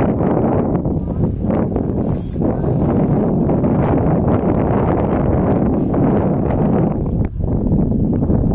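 Wind buffeting the phone's microphone, a steady low rumble that dips briefly about seven seconds in.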